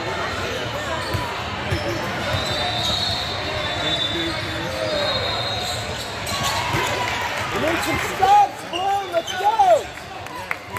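Basketball bouncing on a hardwood gym floor, with voices of players and spectators echoing in the hall. Several loud, short bursts come near the end as play runs back up the court.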